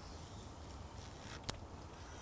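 Quiet open-air background with a steady low rumble, and a single short sharp click about one and a half seconds in.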